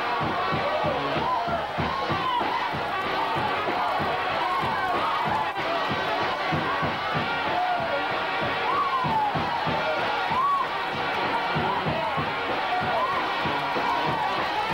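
Lively church music with a quick, steady beat, mixed with a crowded congregation's shouts and cheers.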